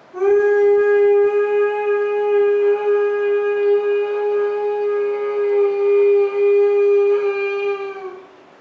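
A man humming one long, steady, high-pitched note with his lips closed: the sustained 'nada' sound of a breathing kriya. It starts just after the beginning and cuts off near the end.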